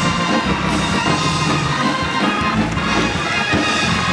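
Live gospel praise music from a church band, with a drum kit and held keyboard chords playing steadily.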